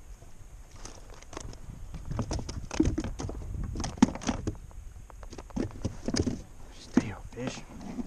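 A man's low, indistinct voice mixed with scattered handling clicks and knocks, the sharpest click about halfway through.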